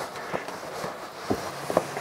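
A fold-up bed platform being pushed up against the wall: soft rustling of the cushioned panel with a few light knocks.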